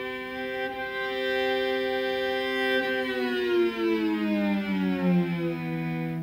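Cello bowed in a sustained double stop, two notes a pure perfect fifth apart (a 3:2 ratio) sounding together. About halfway through, the fifth slides down in pitch to a lower position on the fingerboard and is held there.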